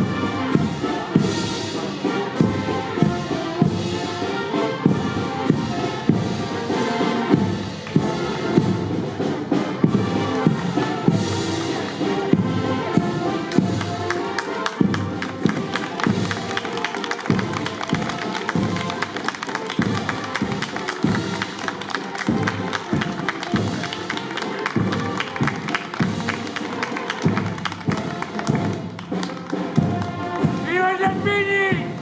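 Brass band playing a march, brass melody over a steady bass-drum beat.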